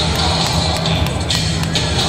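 Loud music with a steady low bass line and a repeating high beat.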